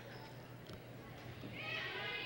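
Quiet gymnasium room tone under a steady low electrical hum, with faint voices from the crowd rising near the end.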